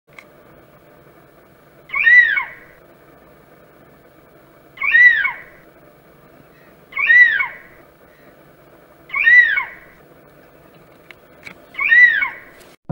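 An animal's call, a short cry that rises and falls in pitch, repeated five times about two to three seconds apart over a steady low background noise.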